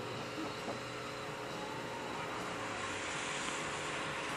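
A car engine in the distance, revving with a rising pitch and growing louder toward the end as the car approaches along the track.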